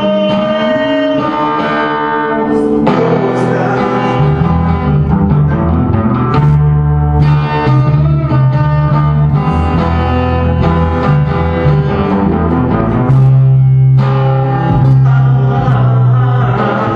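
Live band music from an acoustic guitar and an electric bass, playing an instrumental passage with no singing.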